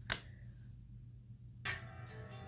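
A single sharp click just after the start. Quiet background music with a plucked guitar comes in about one and a half seconds in.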